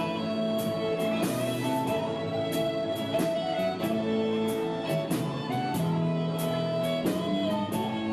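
Live music: an electric guitar strums a steady beat under a slow melody of long held notes that slide between pitches.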